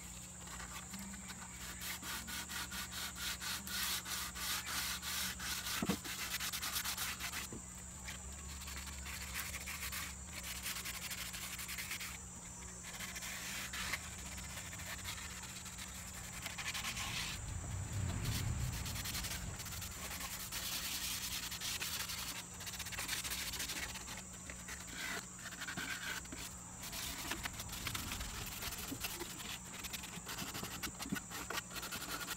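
Sandpaper rubbed by hand over the old finish of a wooden tabletop in repeated back-and-forth strokes, with a few short pauses. This is a scuff sanding to rough up the surface.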